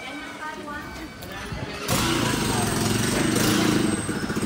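A small engine running close by comes in loud about halfway through and holds a fast, steady buzz.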